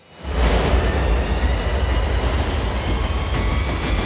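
A fire sound effect: a flame rushes up suddenly shortly after the start and keeps burning with crackles over a deep, steady bass rumble.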